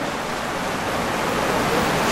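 Steady, even hiss of background noise with no distinct sound event in it, rising a little toward the end.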